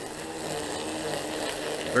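Milwaukee M18 brushless battery-powered string trimmer running steadily on its low-speed setting while cutting grass.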